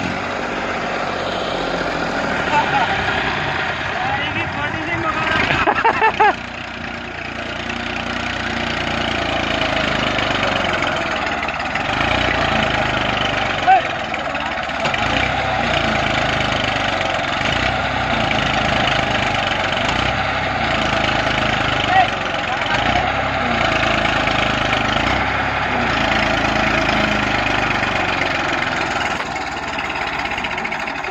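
Massey Ferguson tractor's diesel engine running steadily while the tractor is stuck in soft sandy ground, with men's voices over it. The level swells a few seconds in and cuts off sharply about six seconds in.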